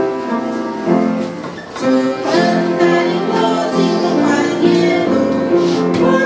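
A hymn played with instrumental accompaniment in sustained chords, fuller from about two seconds in, with the congregation singing along.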